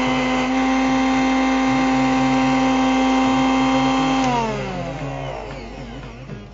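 Electric mixer grinder running steadily at one pitch, its steel jar grinding malai vembu (mountain neem) leaves into a paste. About four seconds in it is switched off, and the motor's pitch falls as it winds down.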